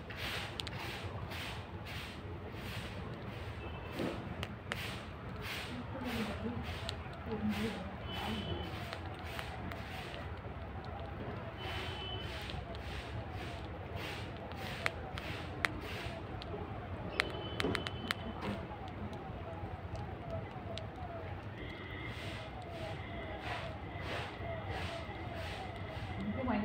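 Palm squirrel chewing wheat grains close to the microphone: crisp little crunches, about two to three a second for the first ten seconds or so, then sparser.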